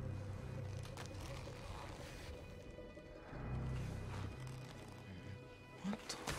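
Quiet, low film score: deep notes swelling and fading over a faint steady tone.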